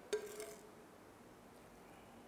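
A single clink of a metal spoon against a frying pan just after the start, with a short ring.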